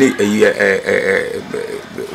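A man's voice: a few words that trail into a long, drawn-out 'uhh' hesitation sound, held steady for about a second before fading near the end.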